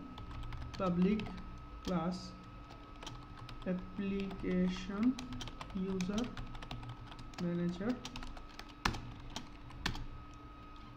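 Computer keyboard typing: irregular runs of keystroke clicks, with two sharper clicks near the end.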